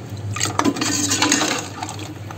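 Metal spoon stirring and ladling curry gravy in a metal pot, clinking against the pot's sides with the liquid sloshing, for about a second and a half.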